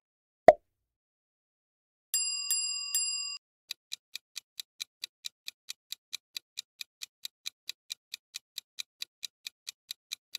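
Quiz sound effects. There is a short loud thump at the slide wipe, then a bright chime struck three times. After that a countdown clock ticks steadily at about three ticks a second.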